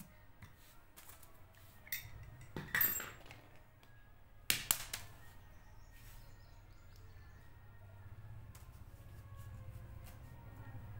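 A brass padlock and a steel needle being handled on a sheet of paper on a concrete floor: a few sharp metallic clicks and clinks, the loudest about three seconds and four and a half seconds in, over a faint low hum that grows toward the end.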